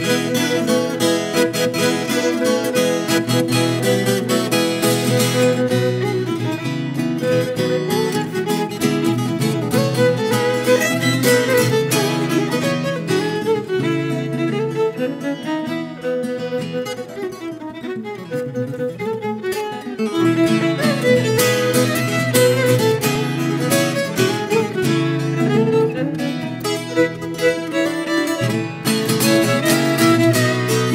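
Violin and ten-string viola caipira playing an instrumental duet, the viola strummed and picked under the bowed violin. Around the middle the music drops to a softer passage with sliding notes, then returns to fuller playing.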